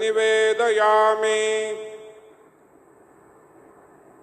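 A voice chanting a Sanskrit puja mantra, drawing out its last syllable until it fades away about two seconds in. Only a faint steady hiss of background noise follows.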